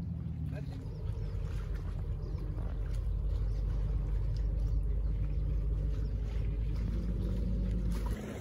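Low, steady engine drone of a motorboat out on the water.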